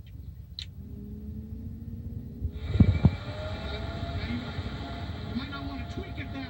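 Blower-door fan starting up to pull a vacuum on the house: its motor whine rises in pitch over a few seconds and then holds steady. A rushing of air comes in about two and a half seconds in, with two loud knocks just after, heard through a TV speaker.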